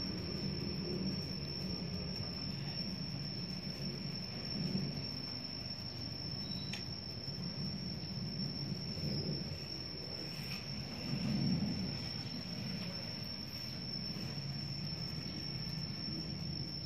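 Steady low rumble of background noise, swelling slightly twice, with a constant thin high-pitched tone throughout and a few faint clicks.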